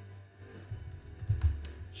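Computer keyboard typing: a short run of quick keystrokes through the second half, over quiet background music with a steady low bass.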